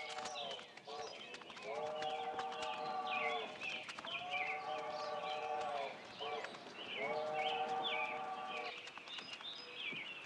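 Distant train whistle sounding three long chords of several notes, each about two seconds with the pitch sagging as it dies away, over birds chirping.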